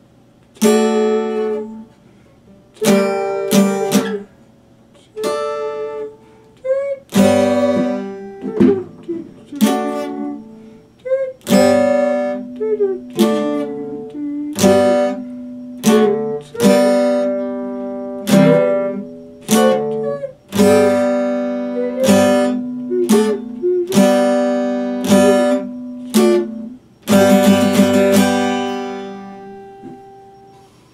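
Epiphone acoustic guitar played solo: chords struck one at a time and left to ring, with short pauses between them. Near the end there is a quick run of strummed strokes, and a final chord rings out and fades.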